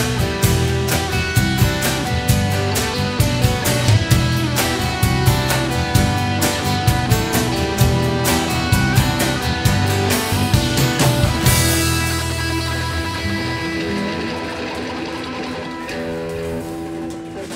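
A rock band playing live, with electric and acoustic guitars, bass and a drum kit on a steady beat in an instrumental passage. About eleven seconds in, the band stops on a last chord and a cymbal crash that ring and slowly fade.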